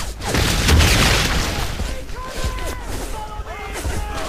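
Battle sound effect: a loud explosion boom about half a second in, followed by men's voices shouting.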